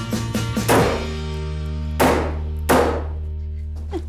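Three sharp thunks of staples being driven through chicken wire into a wooden frame, about a second apart, over background music.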